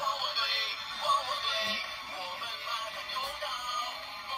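Paw Patrol toy wrist watch playing a sung electronic tune through its small built-in speaker, starting suddenly as its lit button is pressed. The sound is thin and tinny, with no bass.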